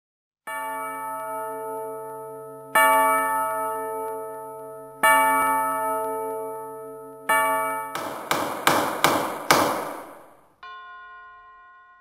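Logo intro music of deep bell-like tones: four strong chimes about two seconds apart, each ringing out. These are followed by four quick crashing hits and a last softer tone fading away.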